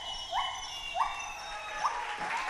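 An animal calling a series of short upward-sliding whoop notes, one every half-second or so, growing fainter in the second half, over a faint high steady tone of rainforest background.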